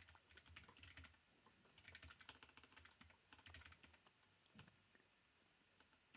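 Faint clicking of computer keyboard keys being typed in short runs with pauses between, thinning out near the end.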